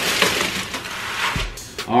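Tissue paper rustling and crinkling as a sneaker is unwrapped and lifted out of its shoebox, stopping about a second and a half in, followed by a short laugh.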